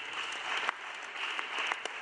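Applause: many people clapping steadily after a prize winner is announced.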